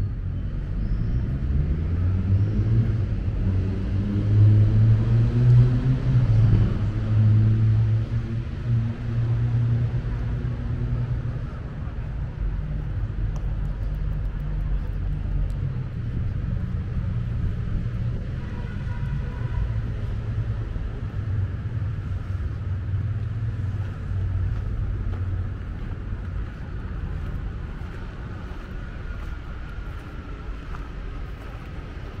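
A motor vehicle's engine accelerates nearby, its pitch rising and loudest about five seconds in. It settles into a steady low traffic rumble.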